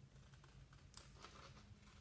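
Scissors faintly snipping through a sheet of paper: a few soft cuts, the sharpest about a second in, over a low steady room hum.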